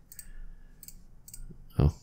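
A few soft computer mouse clicks, spaced apart.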